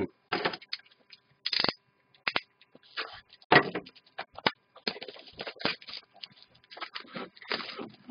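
Clear plastic shrink wrap crackling and crinkling in irregular bursts as it is pulled off a sealed box of hockey cards and crumpled by hand.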